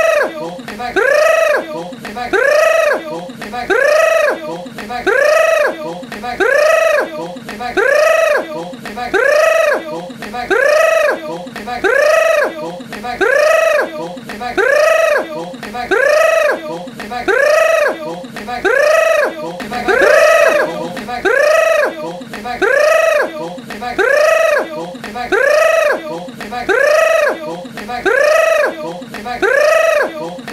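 A person's mock 'grrrr' growl made through clenched, bared teeth, repeated in an even rhythm a little more than once a second, each strained, high call rising and then falling in pitch.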